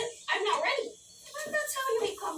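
A young child's voice speaking in short bursts, with a brief pause about a second in.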